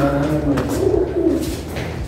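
Low cooing call of a pigeon, with a rounded, wavering note about a second in.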